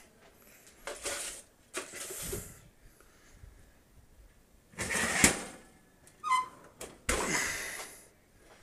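Handling sounds of a foil-lined metal sheet pan being moved and set down on a gas stovetop: a few short scraping and rustling noises, the loudest about five seconds in with a sharp clack, and a brief squeak just after.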